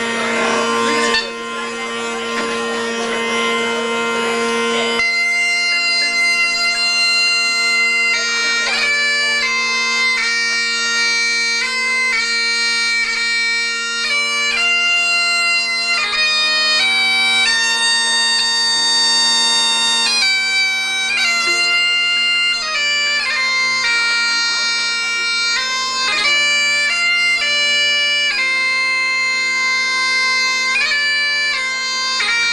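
Highland bagpipes played solo. For the first few seconds the steady drones sound with little melody, then about five seconds in the chanter starts a tune, its notes changing over the unbroken drones.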